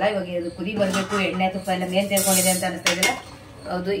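A slotted metal ladle clinking against an aluminium cooking pot as it is put in to stir, with one sharp clink about three seconds in.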